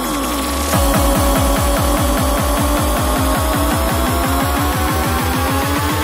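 Progressive psytrance: a falling synth sweep gives way, under a second in, to a driving kick drum and rolling bassline. Above the bass, synth tones climb steadily in pitch.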